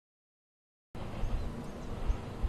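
The sound cuts out completely for about the first second, then returns as outdoor ambience: an uneven low rumble with a few faint bird chirps.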